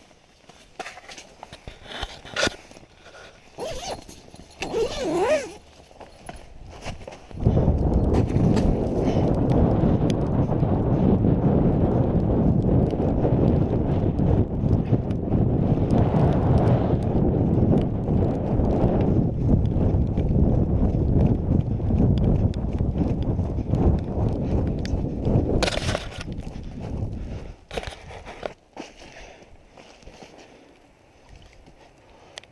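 Footsteps crunching through snow on lake ice at a hurried pace, with heavy rumble on a body-worn microphone, starting about seven seconds in and lasting some twenty seconds. Before and after it, scattered knocks and clicks of gear being handled.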